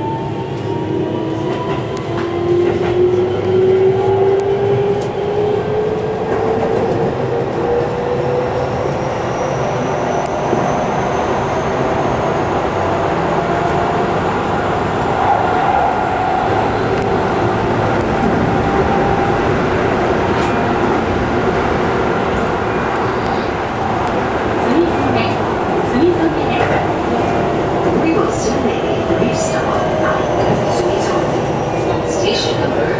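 Keihan electric train heard from inside the front cab, its traction motor whine rising in pitch over the first ten seconds or so as the train picks up speed. After that comes the steady running noise of the wheels on the rails, with occasional clicks.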